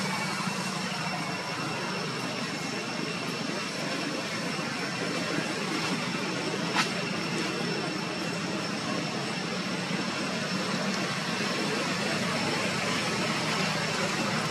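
Steady outdoor background hum, with a thin, high, unbroken tone over it and one sharp click about halfway through.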